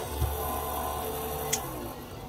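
Bench drill press running as its small bit drills through epoxy resin, then switched off with a sharp click about one and a half seconds in, the motor winding down.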